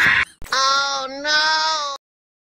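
A high voice singing two long held notes with a short break between them, cut off suddenly at the end; laughter trails off just before.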